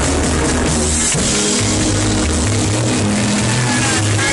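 Live roots reggae band playing loud, with a deep bass line moving between notes under drums and keyboard.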